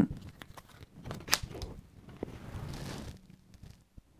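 Oracle cards drawn from a deck and laid down on a wooden table: light rustling of the cardstock with scattered taps, one sharper tap about a third of the way in, and a soft sliding rustle around the middle.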